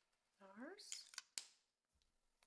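Quiet handling of a lipstick tube: a brief hiss, then three sharp little plastic clicks. Just before them, a short hum-like voice sound rising in pitch.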